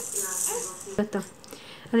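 A plastic bead rattle on a baby play gym, a string of ladybug and flower beads, rattling and clicking as a baby kicks at it, with two sharp clicks about a second in. Soft baby cooing comes first.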